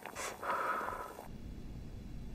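A woman's short breathy sip at a spoonful of hot soup, lasting about a second. Then it cuts off abruptly to a faint low room hum.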